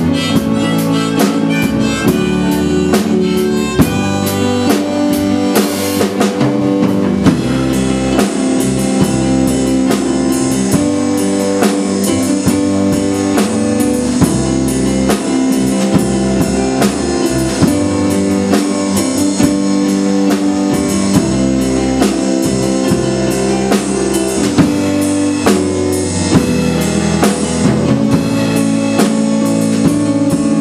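Live band playing an instrumental passage: a drum kit keeps a steady beat under an electric keyboard, with a cymbal crash about six seconds in.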